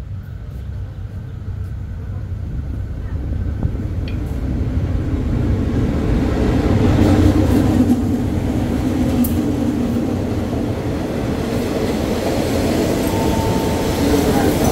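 A GE diesel-electric locomotive hauling passenger coaches arriving along a station platform: its engine grows steadily louder as it approaches and passes, loudest about seven to eight seconds in, then the coaches roll by with a steady rumble. A thin brake squeal starts near the end as the train slows to stop.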